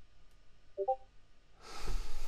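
A pause in a video-call conversation: faint room tone, a short soft pitched sound about a second in, and a breath drawn in near the end, just before speech resumes.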